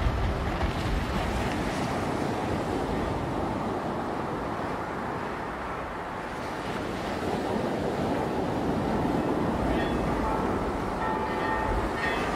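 Surf breaking and washing up a black sand beach: a steady rushing roar that eases a little midway and swells again in the second half.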